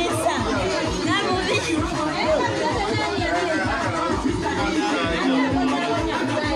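Music with a steady beat playing loudly while a crowd of people talk and chatter over it.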